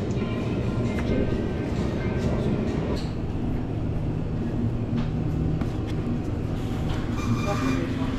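A steady low rumble of background noise, with faint music and voices mixed in and a few light clicks.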